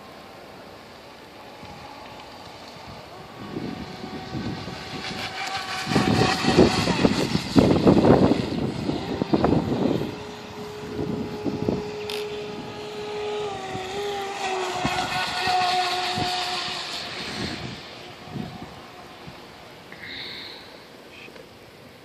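Pro Boat Formula Fastech RC boat's brushless electric motor and plastic Octura propeller whining at speed, the pitch shifting as the throttle and load change. It is loudest between about six and ten seconds in, where a rushing noise joins the whine, and it fades toward the end.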